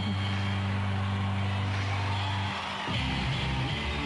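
Rock ballad played live by a glam-metal band: a sung line ends at the start, a low chord is held for about two and a half seconds, then the band comes in on a new chord about three seconds in.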